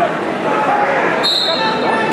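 Many voices from spectators in a gym hall, with one short, steady, high whistle blast a little past the middle: a wrestling referee's whistle stopping the action.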